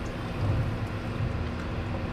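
Steady low hum and hiss of room noise, with a constant faint tone and no distinct sound standing out.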